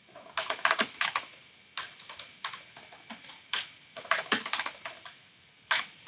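Typing on a computer keyboard: a short run of keystrokes, a brief pause, then a longer run of uneven keystrokes and one last keypress near the end.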